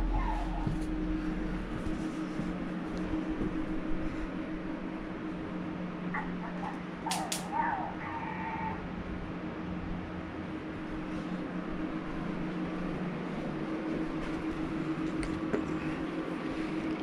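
A pet fox giving a brief whining call about six seconds in, lasting a couple of seconds with a sharp squeak in the middle, over a steady low hum in the room.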